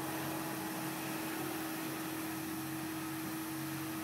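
Steady mechanical hum on one pitch over an even background hiss.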